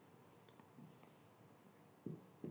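Near silence: a whiteboard marker being drawn along the board, with one short, sharp click about half a second in.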